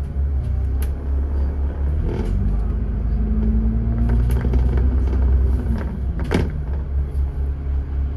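Dennis Trident 2 double-decker bus's diesel engine heard from on board, a steady low rumble that picks up about two seconds in as the bus pulls away from a stop, its note rising for a few seconds. A few short knocks and rattles from the bus come through along the way.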